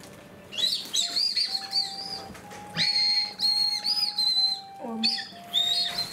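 A candy whistle (whistle ramune) blown between the lips, giving shrill, wavering peeps in three bursts of a second or so each.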